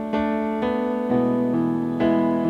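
Electric keyboard playing sustained piano chords, a new chord about every half second, in an instrumental passage of a worship song.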